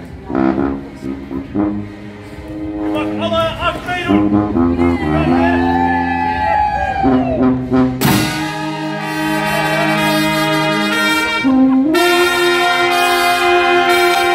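Dutch dweil band (street brass band) playing: trombones, trumpets and sousaphones over bass drum, snare and cymbals. A quieter passage with gliding notes opens, then about eight seconds in the full band comes in loud with a cymbal crash, and it lifts again near twelve seconds.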